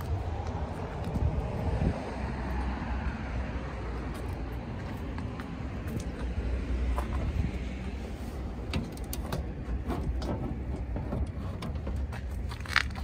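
Low, steady motor-vehicle rumble with scattered light clicks in the second half.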